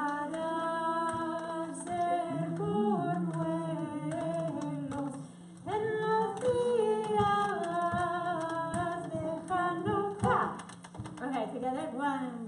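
Unaccompanied singing, a woman's voice leading, in long held melodic lines with a short break about five and a half seconds in.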